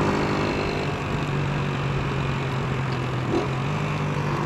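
Small motorcycle engine running at a steady cruising speed, a constant low hum with wind and road noise over it.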